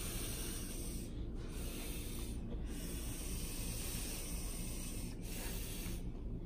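Breath being blown by mouth into inflatable balloon balls: a steady hiss of air. It breaks off briefly about one, two and a half and five seconds in, as breath is drawn again.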